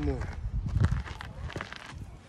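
Footsteps on gravel: several steps as someone walks off and steps up onto a wooden edge.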